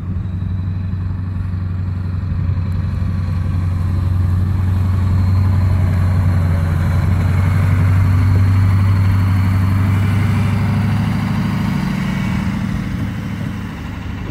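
Ford dually pickup's 7.3-litre Powerstroke V8 turbo-diesel running steadily under load while it pushes snow with its plow. It grows louder toward the middle as the truck passes close by, then fades as it moves away.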